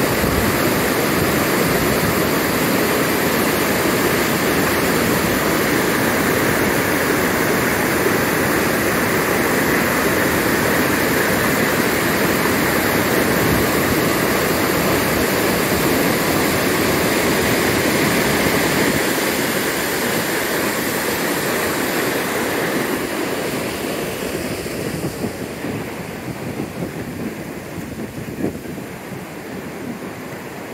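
River rapids: fast white water rushing over rocks in a loud, steady wash, easing off somewhat over the last ten seconds.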